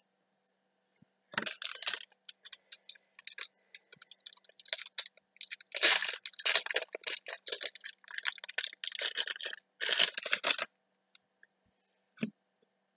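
Trading cards and their plastic wrapping being handled, in irregular bursts of crinkling and rustling with small clicks, the busiest stretch coming about halfway through.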